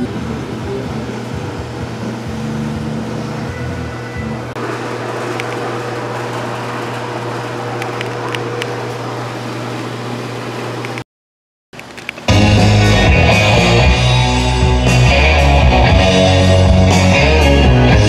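Rock music with guitar playing through a car stereo with a newly installed JL Audio W3 10-inch subwoofer. The music plays at a moderate level, cuts out for about a second past the middle, then comes back much louder with heavy bass.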